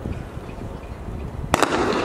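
Starting gun for a 110 m hurdles race: a sharp double crack about one and a half seconds in, followed by louder crowd noise as the race gets under way.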